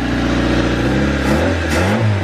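Carburetted Honda D15 four-cylinder engine of an EG Civic running, with the throttle blipped from about a second in so the engine note rises and falls a few times. It is feeding from a bottle of fuel through its mechanical fuel pump.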